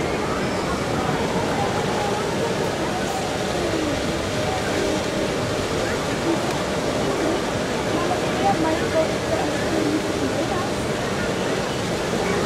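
Outdoor theme-park ambience: a steady rushing hiss with the indistinct chatter of passing visitors, the voices a little clearer in the second half.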